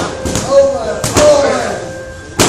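Knee strikes landing on Thai pads: sharp slaps, one at the start and another pair about a second in, with short shouted calls and exhalations between them.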